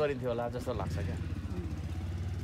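A motor vehicle's engine running with a steady low hum, coming in about a second in after a man's voice at the start.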